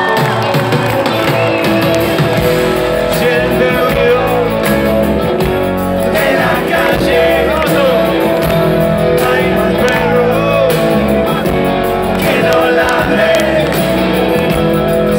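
Live rock band playing at full volume: electric guitars, bass and drums, heard through a phone microphone in the audience.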